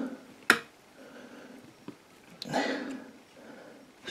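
Quiet handling of mushrooms in a lined basket: a sharp click about half a second in, then faint rustling and a short soft swell of noise a little past halfway.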